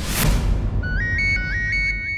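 Dramatic background score opening with a heavy hit, then, about a second in, an electronic message-alert tone: a quick run of rising beeps settling into a held note. It is the alert of an incoming bank notification.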